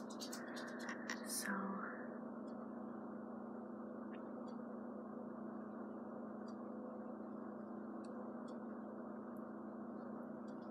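Faint clicks of small plastic construction-toy pieces being handled and fitted together, thickest in the first two seconds and sparse after, over a steady electrical hum and hiss. A short whisper-like sound swells about a second and a half in.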